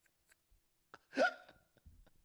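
A pause, then about a second in a man's single short, hiccup-like laugh sound rising in pitch.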